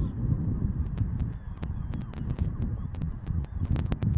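Field recording on an open mudflat: a steady low rumble of wind on the microphone, with faint bird calls and many scattered sharp clicks.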